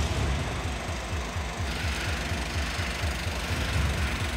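Heavy diesel lorry engine running at low revs with an even low throb, about five pulses a second, as the truck pulls slowly forward. A steady hiss joins in after about two seconds.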